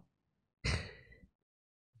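A man's single short breath into a close microphone, about half a second long and a little over half a second in.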